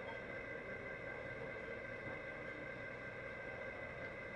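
Faint, steady room tone with a constant hum running underneath, and no distinct events.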